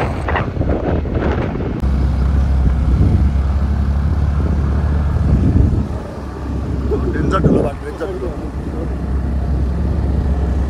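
Motorbike ride heard from the pillion seat: a heavy low rumble of wind on the phone microphone and road noise sets in about two seconds in and keeps on, with brief voices near the start and again around seven seconds.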